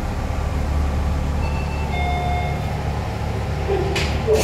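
Passenger lift car travelling with a steady low hum from its machinery and ride. Around the middle a short electronic chime sounds, and near the end a sharp click comes as the car arrives and the doors are about to open.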